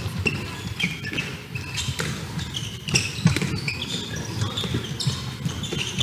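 A handball bouncing and being caught on an indoor court, with repeated short knocks, and players' shoes squeaking briefly on the sports floor as they run and cut.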